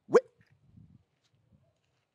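A man's single short exclamation, "Where?", spoken into a phone with a sharp upward rise in pitch, followed by faint low background noise.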